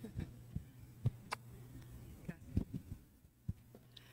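Handling noise from a handheld microphone as it is passed from one person to another and carried: a series of soft, irregular knocks and thumps. A steady low hum from the sound system runs underneath.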